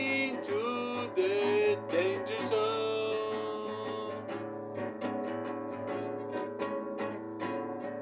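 Classical guitar strummed steadily in a driving rock rhythm. A man's voice sings held, wavering notes over it for the first three seconds or so, after which the guitar carries on alone.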